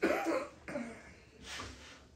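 A person coughing: a loud cough at the start, followed by two weaker ones.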